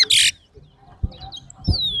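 Large-billed seed finch (towa-towa) singing. A loud phrase of rapid, warbling trills ends just after the start. A quiet gap follows, then a few soft chirps and a clear whistled note falling in pitch near the end.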